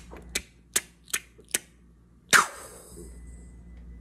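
A slow run of sharp, evenly spaced clicks, about two and a half a second, like a catapult being cranked taut. They are followed about two and a half seconds in by one louder release sound with a short hissing tail, the loudest moment.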